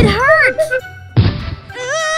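Cartoon soundtrack: two thuds, one at the start and one about a second in, with short voice-like cartoon sounds rising and falling in pitch over background music.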